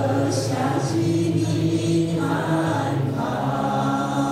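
A choir singing a slow devotional song in long held notes.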